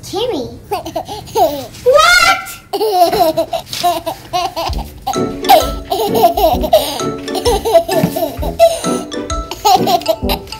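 Laughter and high squealing voices over upbeat background music with a steady beat.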